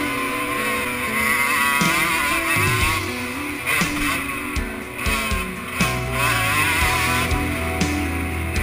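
Music laid over the two-stroke engine of a Suzuki RM125 dirt bike, revving up and down as it is ridden hard.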